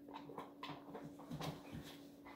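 A run of light, irregular clicks and taps, several a second, with a low thump about a second and a half in, over a steady hum.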